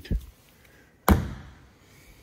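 An aluminium drink can set down hard on a table: one sharp knock about a second in, with a short ringing decay.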